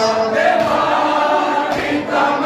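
A group of men chanting a noha, an Urdu lament for Husayn, in unison in a sustained melodic line.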